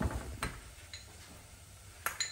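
Metal spoon clicking against a small bowl as chopped ginger and garlic are scraped into a saucepan: two light clicks half a second apart, then a fainter tick.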